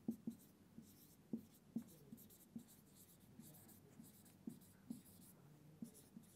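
Marker pen writing on a whiteboard: faint, irregular taps and short strokes as words are written.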